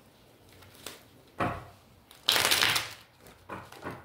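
A tarot deck being shuffled by hand: a short burst about a second and a half in, a longer and louder one just past halfway, and a lighter one near the end.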